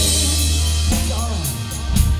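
Live band music: drum kit and a heavy sustained bass, with a short sung line about a second in.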